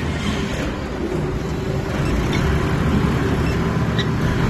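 140-ton injection molding machine running with a steady mechanical hum and a held low tone, growing slightly louder about halfway through.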